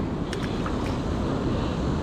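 Surf breaking on a rocky reef shore, a steady rushing wash, with wind buffeting the microphone.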